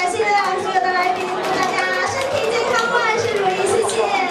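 Many voices talking at once in a large banquet hall: the general chatter of diners at their tables.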